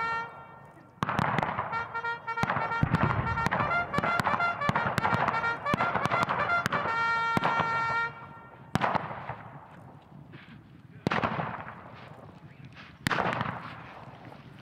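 A brass trumpet call sounded over a cavalry charge, its notes shifting in pitch and crossed by many sharp cracks; the call stops about eight seconds in. Three loud sudden bangs follow, roughly two seconds apart, each dying away over about a second.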